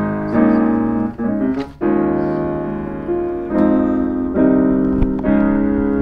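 Piano playing a slow run of sustained chords, a new chord every second or so, each left to ring. It is the passage of the orchestration being played through to find the chord with a lingering harmony.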